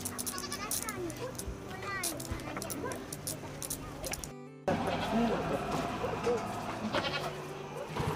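Goat bleating, a couple of short calls in the first few seconds.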